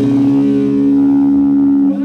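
The final chord of a punk-rock song ringing out, held steady on amplified electric guitar and bass, with the wash of a crash cymbal fading beneath it.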